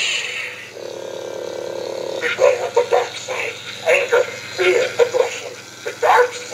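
Talking Yoda figure playing its recorded sound through its small speaker after its button is pressed: a short hiss, then a steady hum for about a second and a half, then Yoda's voice speaking.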